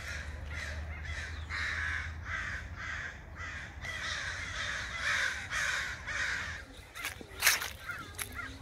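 A flock of crows cawing overhead, many overlapping caws at about two a second, fading out after about six seconds. A sharp thump near the end.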